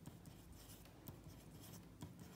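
Faint scratching of a ballpoint pen on a paper workbook page as small numbers are written and circled.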